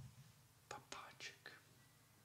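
Near silence in a small room, broken in the second half by four short, faint whispered sounds from a man.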